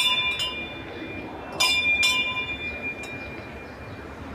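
A temple bell ringing, struck twice more about a second and a half in. Each strike rings on with a clear tone that slowly fades.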